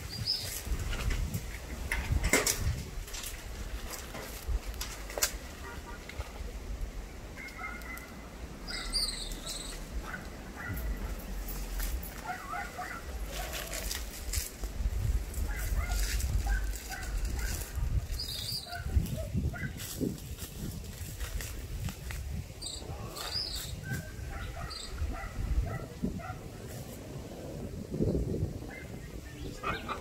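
Wind blowing on the microphone with a low rumble, and palm fronds rustling, with scattered clicks. Short high bird chirps come now and then.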